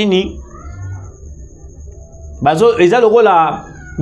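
A man speaking, with a pause of about two seconds in the middle where only a low hum and a faint steady high whine remain before he resumes.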